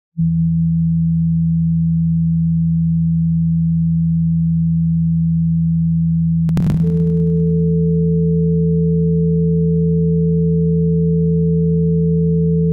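Electronic sine-wave drone: a steady low tone that begins just after the start, joined about six and a half seconds in by a higher held tone, entering with a brief click.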